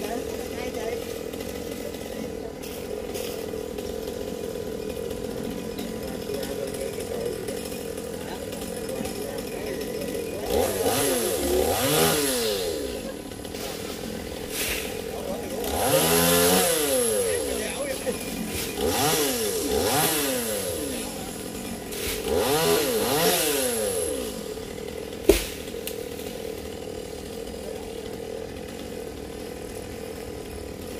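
Small two-stroke chainsaw idling steadily, revved up four times in bursts of one to two seconds each in the middle stretch, its pitch rising and falling with each rev as it makes small cuts into branches. A single sharp click comes near the end.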